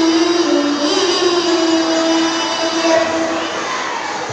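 A child's voice reciting the Qur'an in the melodic tilawah style through a microphone: one long held, ornamented phrase that wavers and rises in pitch about a second in, ending near the end.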